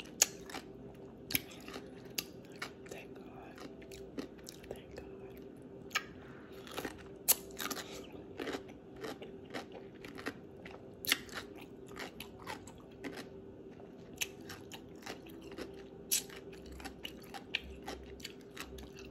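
Close-miked biting and chewing of a crunchy baby dill pickle: irregular crisp crunches and wet mouth sounds. A faint steady hum runs underneath.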